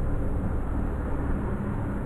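A steady low rumble in the background.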